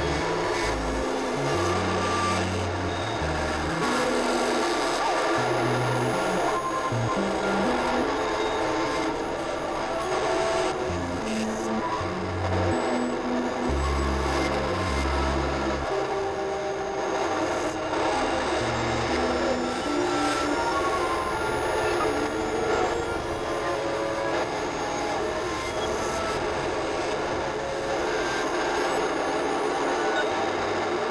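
Experimental electronic synthesizer noise music: a dense, noisy drone of many held tones over blocky low bass notes that step from one pitch to another every second or so.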